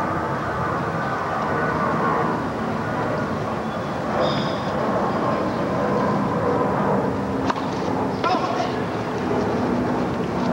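Tennis crowd murmuring steadily between points, with no commentary over it. Near the end come a few sharp knocks of racket on tennis ball as the set point is played.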